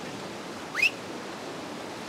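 Whitewater river rapids rushing steadily, with one short, sharply rising whistle-like chirp a little under a second in.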